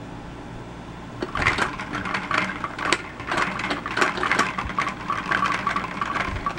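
Plastic pump-action toy spinning top being pressed and worked by hand, giving a run of irregular sharp clicks and rattles that starts about a second in.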